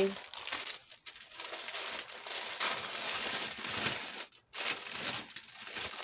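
Striped paper wrapping crinkling and rustling as it is unfolded and pulled apart by hand to unpack a package, with a brief pause about four and a half seconds in.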